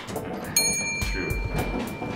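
Elevator arrival chime: a single bell-like ding about half a second in, ringing on and fading over about two seconds.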